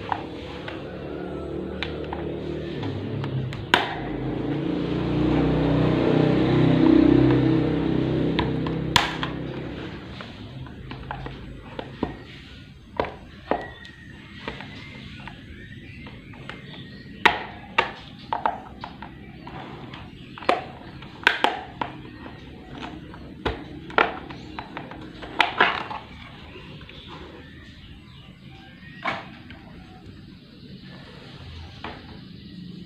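Sharp plastic clicks and snaps, more than a dozen and mostly in the second half, as a stand fan's plastic rear motor cover is pried off at its clips with a flat-blade screwdriver. During the first ten seconds background music swells and fades, louder than the clicks.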